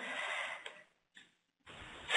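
Faint hiss of room and microphone noise, with a single faint click about two-thirds of a second in, then about a second of near silence.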